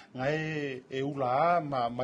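A man's voice drawing out two long, held syllables in a sing-song, chant-like way.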